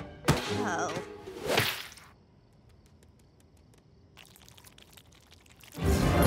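Cartoon sound effects: a sharp hit, then a short falling sound and a swish in the first two seconds. A faint, nearly quiet stretch with light regular ticking follows, and music comes in just before the end.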